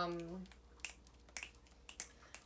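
A woman's drawn-out 'um', then a few sharp finger snaps at irregular spacing.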